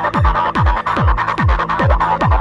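Goa/psychedelic trance track: a steady four-on-the-floor kick drum, a little over two beats a second, each kick dropping in pitch, under a busy synth line and ticking hi-hats.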